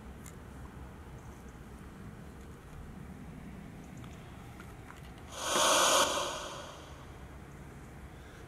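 A single loud breath out close to the microphone about five seconds in, a rush of air that fades over a second or so. Faint outdoor background the rest of the time.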